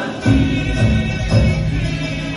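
A group of voices singing together in Cook Islands Māori, a kapa rima action song, over a steady low beat about twice a second.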